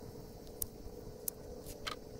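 Honeynut squash being picked off trellised vines: four short, sharp clicks of the stems being cut and handled, over a faint steady hum.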